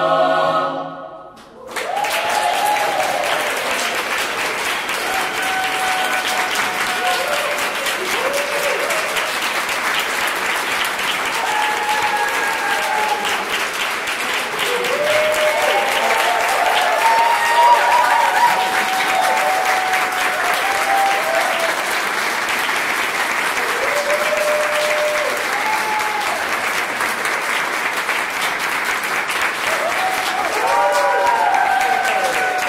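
A mixed choir's final held chord cuts off about a second in. Then an audience applauds, with scattered cheers rising and falling over the clapping.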